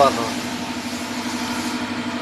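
A steady mechanical hum with a constant low drone, just after a last word of speech at the very start.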